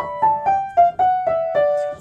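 Yamaha upright piano: a right-hand D major scale played downward one note at a time, about four notes a second, each note ringing into the next.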